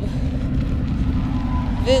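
Steady low rumble of a stroller rolling along a gravel road shoulder, with a faint thin whine coming in near the end.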